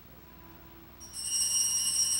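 Faint room tone, then about a second in a small bell starts ringing: a high, steady ring of several tones held together. It is the signal for the priest's entrance at the start of Mass.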